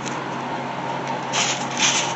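Dry, crumbled apple mint leaves rustling and crackling against a paper liner as a hand sifts through them to pick out the hard stems, with two short louder crunches near the end.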